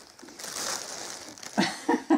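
Crinkly rustling of a plastic packet of baby wipes being handled. Near the end, a voice breaks in with short, laugh-like bursts.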